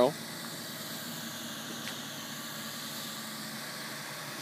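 Steady, faint background noise with a low hum and no distinct event.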